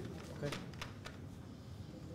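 A few light clicks and knocks, about half a second to a second in, over a faint murmur of voices in the background.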